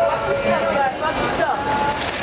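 Metro train wheels squealing on the rails: several short squeals sliding up and down in pitch, over a steady high whine.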